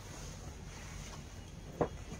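Silk saree fabric rustling softly as it is handled and draped, over a steady low background rumble, with one brief sharp click near the end.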